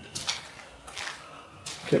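Three short scuffs from someone moving about on a gritty concrete floor, then a man's voice starts near the end.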